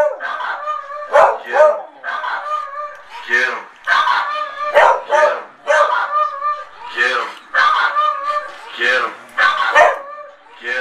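A small dog barking over and over, about two barks a second, each bark pitched and wavering.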